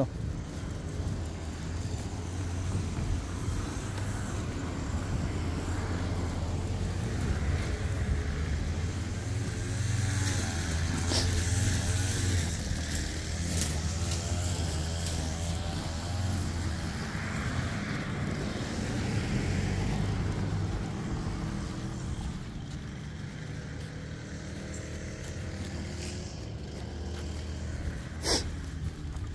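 A motor vehicle running close by: a low hum that is loudest about ten to thirteen seconds in and fades away after about seventeen seconds.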